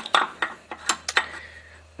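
Several short, light metal clinks and taps as steel engine parts are handled at the front main bearing and crankshaft of a Willys L134 engine block, over a faint steady low hum.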